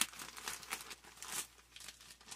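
Gift wrapping paper rustling and crinkling as hands pull a package open, in a string of short crackles, the sharpest right at the start.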